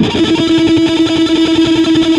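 Distorted Ibanez electric guitar, with one note tremolo-picked rapidly and held at a steady pitch. The picking is driven by thumb and index finger, a wrong technique that makes fast tremolo picking hard.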